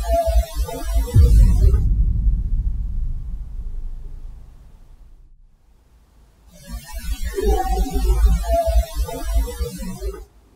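A short stretch of hissy recorded audio holding a faint voice-like sound, played twice with a near-silent pause between. This is the alleged ghost voice that the captions render as 'Who are they… Ghosthunters', which an investigator took for a child's voice. After the first playing, a low rumble swells up and fades over a few seconds.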